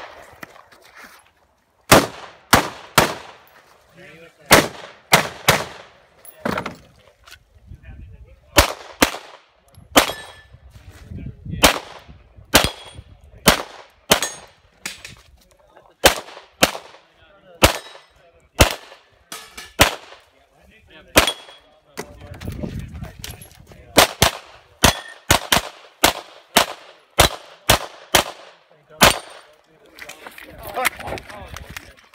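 Gunshots from a 3-gun competitor's firearms during a timed stage: quick strings of two to five shots separated by short pauses, with a faster run of shots near the end.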